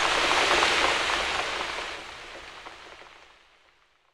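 Rain sound effect on the song's recording: steady falling rain with faint scattered drops, fading out to silence over the last couple of seconds.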